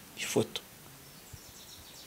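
A pause in a man's speech: one short breath or mouth sound about half a second in, then faint steady background noise.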